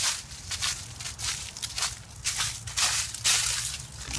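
Footsteps crunching on rough outdoor ground, about two to three steps a second at an uneven pace.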